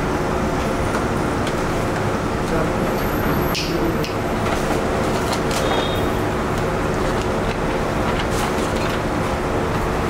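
Steady mechanical drone of workshop background noise with a low hum, unchanged throughout, and a single short metallic clink about three and a half seconds in.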